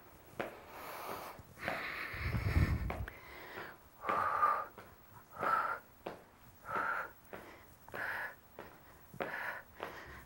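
A woman breathing hard through seated jumping jacks, a short forceful exhale roughly every second and a quarter, in a small room. About two seconds in there is a louder, longer noisy stretch with a low rumble.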